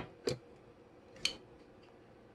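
Two light clicks about a second apart from cookware being handled, over faint room tone.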